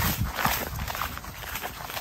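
Footsteps swishing through long grass as someone walks up to a grazing horse, with irregular soft thuds.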